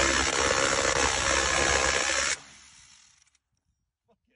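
Handheld belt-fed rotary-barrel minigun firing a long continuous burst, the shots so fast they merge into one loud buzzing roar. It cuts off suddenly about two and a half seconds in, leaving a short fading tail.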